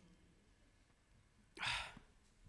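Quiet room tone, then near the end a single short breath into a handheld microphone.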